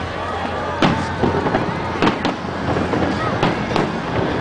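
Aerial fireworks shells bursting overhead: a run of sharp bangs, the loudest about a second in and about two seconds in, with spectators' voices underneath.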